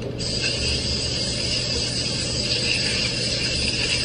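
Kitchen faucet running into the sink, a steady hiss of water that comes on suddenly a fraction of a second in.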